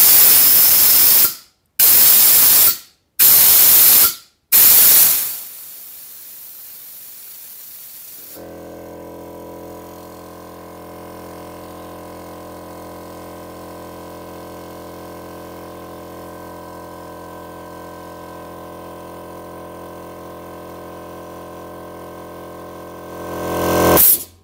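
Compressed air bled from a small workshop compressor's tank in four short, loud hisses. From about eight seconds in, the compressor's electric motor and pump run steadily, pumping the tank back up to test the newly adjusted pressure-switch cut-out, and the sound swells near the end.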